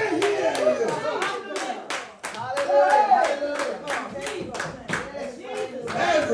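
Congregation clapping in a steady, quick rhythm, about four to five claps a second, with raised voices over the clapping.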